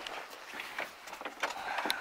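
Scattered light knocks and rustling as a person climbs up the metal step into a tractor cab and sits down. The engine is not running.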